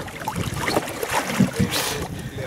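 Wind on the microphone and water around a wooden fishing canoe, with scattered low knocks as a line is hauled in over the gunwale and a short hiss near the end.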